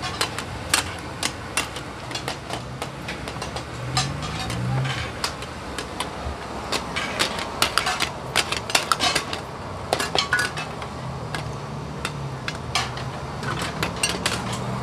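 Metal ladles and tongs clanking and scraping against metal cooking pans in quick irregular knocks, busiest around the middle, over a steady low hum.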